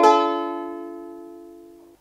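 A D minor chord strummed once on a ukulele, its notes ringing and slowly fading, then cut off suddenly near the end.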